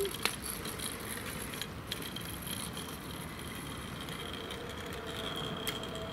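Kick scooter's wheels rolling on wet asphalt, a steady hiss that grows a little louder near the end as the scooter comes back closer.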